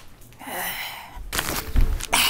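A woman's long, breathy sigh, followed about a second and a half in by a dull low thump.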